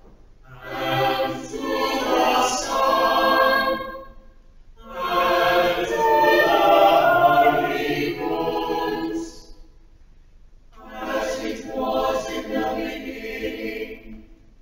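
Mixed church choir singing unaccompanied, in three phrases with short breaks between them.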